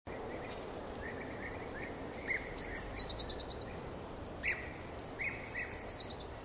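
Birds calling and singing over a steady outdoor background noise. Short chirps come throughout, and a high song phrase falls in pitch into a quick run of repeated notes, once about two and a half seconds in and again near the end.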